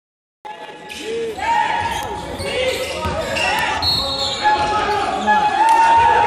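Live sound of an indoor basketball game, starting about half a second in: a basketball bouncing on the court amid players' voices, in a large echoing hall.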